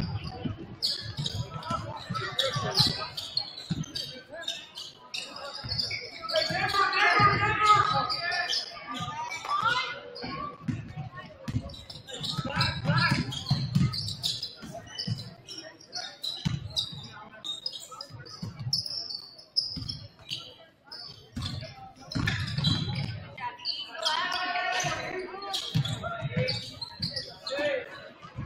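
A basketball being dribbled on a hardwood gym floor during live play, a string of sharp bounces, with shouted voices from the court and stands echoing in the large gym.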